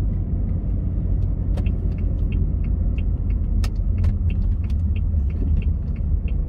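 Car interior road and engine rumble while driving. From about a second and a half in, a turn signal ticks evenly, about three ticks a second, as the car turns off the road.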